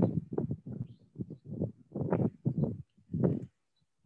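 Muffled, indistinct speech in short syllable-like bursts, low in pitch and lacking clarity, stopping about half a second before the end.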